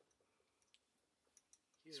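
Near silence, with a few faint, brief clicks. A man's voice starts right at the end.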